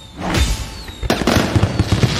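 Cinematic title-intro sound effects over music: a swelling whoosh with a low boom, then about a second in a dense burst of rapid crackling hits like fireworks.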